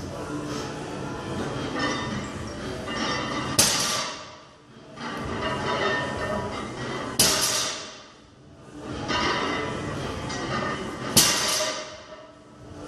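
Loaded barbell set back down onto blocks between block-pull deadlift reps: three sharp clanks of the weight plates, about four seconds apart, each ringing briefly.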